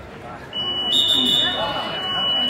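Electronic match-timer buzzer sounding one steady high-pitched tone from about half a second in, marking time running out on the wrestling period. Crowd voices continue underneath.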